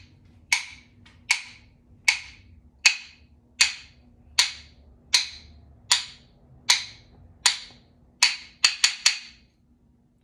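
A pair of rhythm sticks struck together to keep a steady beat, about one click every three-quarters of a second, with a quick flurry of strikes near the end.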